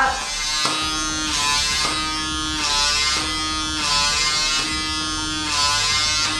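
Small electric suction motor of a PMD personal microdermabrasion wand buzzing steadily as it is worked over facial skin. Its pitch sweeps down and back up, with a hum coming and going, about every second and a half.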